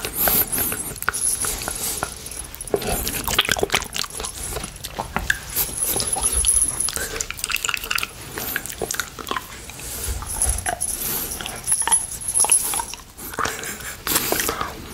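Close-miked wet mouth sounds from licking and sucking on a hard rainbow candy cane: irregular smacks, slurps and small clicks that come thick and fast.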